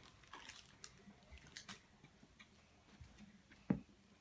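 Faint crinkling and small clicks of a blind bag's packaging being worked open by hand, with one louder knock near the end.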